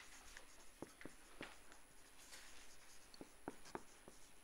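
Faint squeaks and taps of a marker pen writing on a whiteboard: a scattering of small clicks, with a short soft scratching stroke a little after two seconds in.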